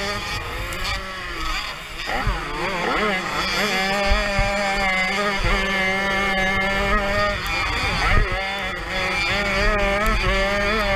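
Small 50 cc two-stroke Jawa Pionýr motocross engines racing, heard from on board: the engine's pitch swings up and down quickly between about two and three seconds in and again briefly near eight seconds, otherwise holding a steady high buzz under full throttle.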